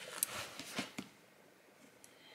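A few faint taps and rustles from handling a taped cardboard box, then near silence for the last second.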